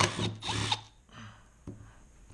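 Cordless Milwaukee power driver running in a short burst of under a second, backing a screw out of a metal engine-computer case, then stopping; a single click near the end.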